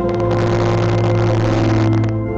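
Church organ playing sustained chords over a held low bass note.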